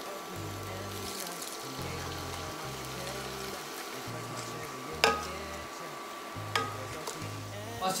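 Raw chicken pieces sizzling in hot olive oil in a frying pan with a steady hiss. There is a sharp click about five seconds in and a smaller one a second and a half later.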